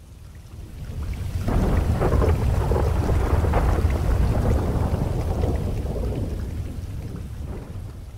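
A long roll of thunder over rain. It swells over the first second or two, stays loud for a few seconds, then slowly dies away.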